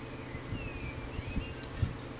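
Campagnolo Athena rear hub axle being turned by hand in its freshly adjusted cup-and-cone bearings, giving only a few faint clicks over a low background hum, with a faint falling chirp about half a second in.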